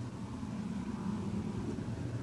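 Steady low hum from a running kitchen appliance, even and unchanging.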